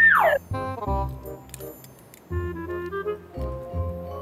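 Background music with a repeating low bass line and short higher notes, opened by a loud, quick downward-sliding sound effect that falls in pitch in under half a second.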